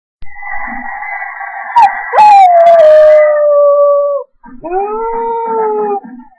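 Husky howling: one long howl that slides slowly down in pitch over about four seconds, then after a brief break a second howl that rises and holds.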